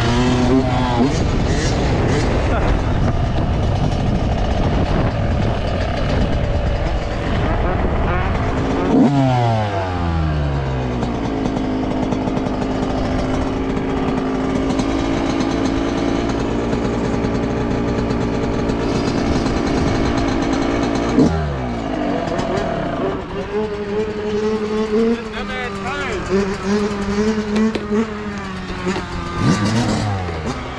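Yamaha YZ125 two-stroke dirt bike engine running hard under riding, with wind noise on the mic. About 9 s in and again about 21 s in the throttle shuts and the revs fall steeply. Near the end the engine runs lower and steadier, the pitch wavering with small blips of throttle.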